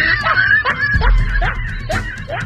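Laughter, a quick string of short rising snickers about three a second, over background music.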